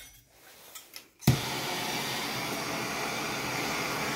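MAPP gas hand torch lighting with a sudden pop about a second in, then the steady hiss of its burning flame.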